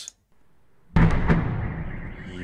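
Explosion in a phone video: a sudden loud boom about a second in, a second sharp crack a moment later, then a long rumbling decay.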